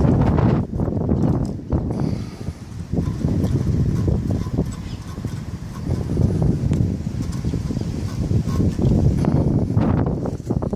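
Irregular clunks and knocks from an OMC outboard's lower engine mount as the bolts through it are rocked back and forth by hand, over a low rumble. The worn rubber mount lets the bracket move with far too much slop.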